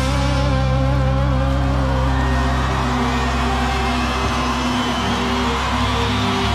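Live rock band in a breakdown: held bass and guitar notes over a low drone, with the drums dropped out.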